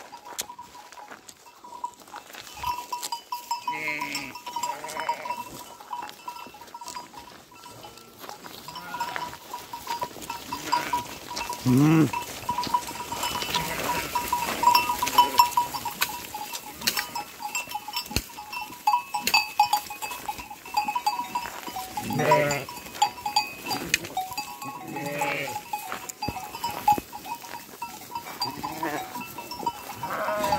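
A flock of sheep bleating now and then, about half a dozen calls spread through, one loud wavering bleat about 12 seconds in, over the steady ringing of bells on the flock.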